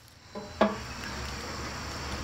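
A galvanized metal watering can gives a brief clank about half a second in as it is tipped. Water then pours steadily from it into the fill pipe of a chicken waterer's storage tank, refilling the tank from outside the coop.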